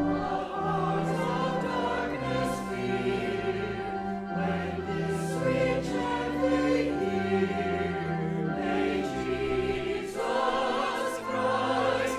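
Church choir singing a slow anthem in long held chords, accompanied by an organ sustaining low notes beneath the voices.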